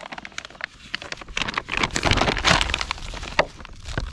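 Plastic bag crinkling and rustling as hands work a dry dough-bait mix inside it, a dense run of crackles that is busiest and loudest in the middle.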